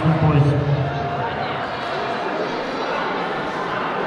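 Speech echoing in a large sports hall. After about a second it gives way to the hall's steady background murmur.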